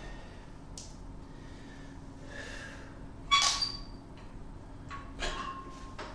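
Metal weight plates on a loaded barbell clanking as the bar is lifted and handled: one sharp ringing clank about three seconds in and a smaller one near the end, over a low steady hum.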